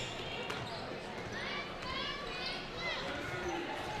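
Gym sound from the court during a basketball game: a basketball bouncing on the hardwood floor a few times early on, with faint high-pitched calls from the players over a low hall murmur.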